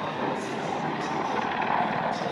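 Tiger attack helicopter in flight, its rotor and turbine sound a steady, even noise.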